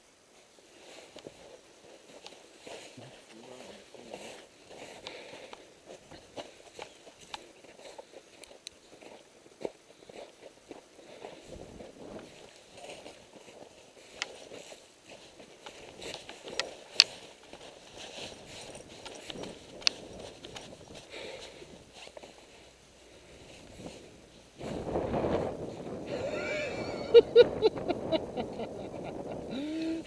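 Footsteps walking over snow and ground, an irregular run of scuffs and sharp clicks. About 25 seconds in a louder, steadier noise takes over.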